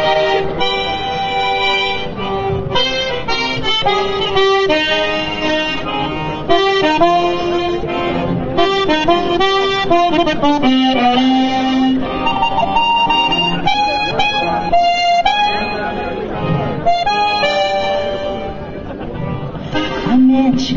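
Trikitixa, the Basque diatonic button accordion, playing live through a PA: a quick melody of stepping notes over held chords.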